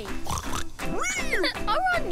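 Cartoon pig vocalizing in several short calls whose pitch wavers up and down, over background music with steady held notes.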